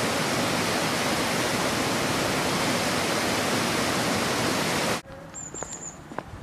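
A loud, even hiss of static-like noise that starts abruptly and cuts off suddenly about five seconds in.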